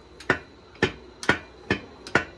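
Sharp metal clicks, four in about two seconds, from a Volkswagen air-cooled engine's crankshaft as it is pushed forward and back by hand in the freshly closed case. The check shows that the crankshaft moves freely after the case halves have been torqued to 20 lb.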